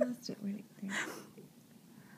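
Hushed, whispered speech and a few short low murmurs, dying away to faint room tone just past halfway.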